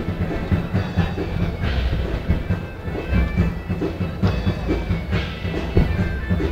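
Live medieval-style music: a driving drum rhythm under steady, held wind-instrument notes.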